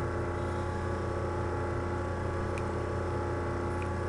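Steady electrical hum with a stack of buzzing overtones, the kind of mains hum a recording setup picks up. A faint click comes about two and a half seconds in.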